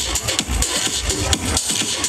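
Electro/dubstep dance music played loud through the PA, with a pulsing bass kick about two and a half times a second; the bass drops out about one and a half seconds in.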